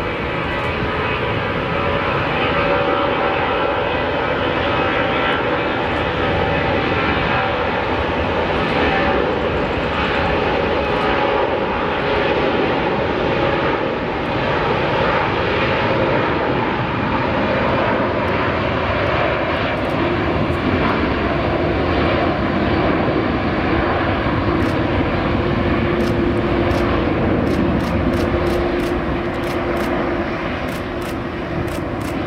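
Airbus A340's four CFM56 turbofans at takeoff thrust during the takeoff roll and rotation: a steady, loud jet roar with engine tones, one of which rises slightly about halfway through.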